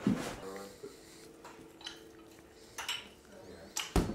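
Wooden kendama clacking: the ball knocks against the wooden cups and spike in a few separate sharp clicks, the sharpest near the end.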